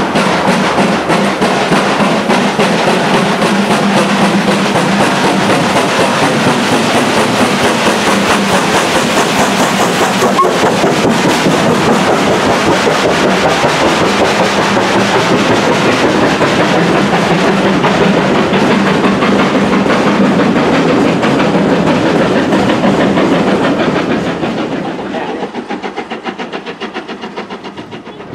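LMS Black 5 4-6-0 steam locomotive No. 45379 passing close beneath with its train, followed by the coaches rolling by with rapid wheel clatter. The sound dies away about 24 seconds in as the train draws off.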